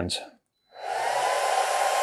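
The Atezr L2 36W diode laser engraver's fans spinning up as the machine starts a job: a steady airy whoosh with a thin whine, coming on about a second in and holding level.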